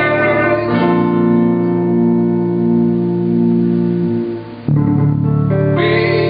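Guitars playing a slow passage: a chord is struck about a second in and left ringing, then fades away; a brief drop follows, and a new chord comes in about four and a half seconds in.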